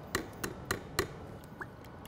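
Four light ticks in about the first second, then a faint short blip, as a steel measuring cup of hot sauce is emptied over a plastic bucket.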